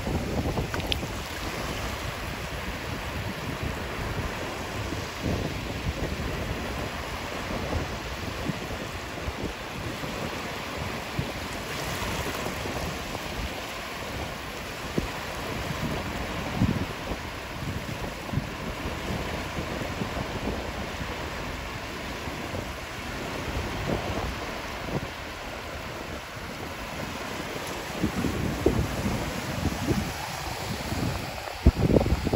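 Wind buffeting the microphone in uneven low rumbling gusts, over the steady wash of small waves lapping at the water's edge.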